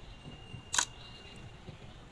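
Low room noise with a single short click a little under a second in.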